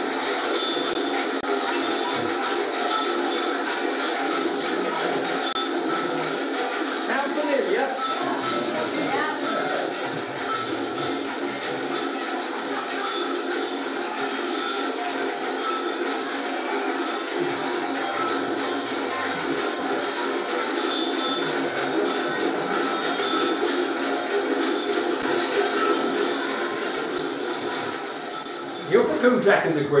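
Recorded outdoor procession music played back over the hall's speakers from a video: a dense band of steady, held tones that runs on at an even level, with voices mixed in, stopping about two seconds before the end as live speech resumes.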